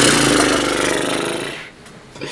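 A man's loud, drawn-out raspy groan of reaction, lasting about a second and a half and fading out.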